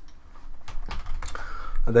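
Computer keyboard keys and mouse buttons clicking, a handful of sharp irregular clicks.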